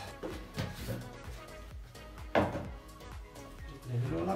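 Background music, with a few knocks of plastic containers being handled on a kitchen counter; the loudest, a sharp clunk, comes a little past halfway.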